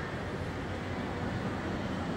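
Steady, even background noise of a large church interior with no distinct event: a mix of room hum, fans and quiet people.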